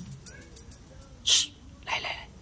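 A person's short, sharp hiss of breath about a second in, followed by a softer breathy sound at the very end.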